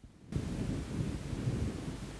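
After a moment of near silence, a low rumbling noise starts suddenly about a third of a second in and carries on unevenly.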